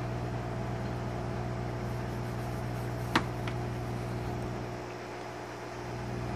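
A steady mechanical hum, with one sharp click a little after three seconds in and a fainter click just after it.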